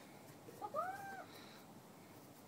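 A single short, high-pitched vocal call, about half a second long, that rises and then falls in pitch.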